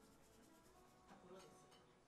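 Faint woman's voice talking at a microphone in a small room, over quiet room tone.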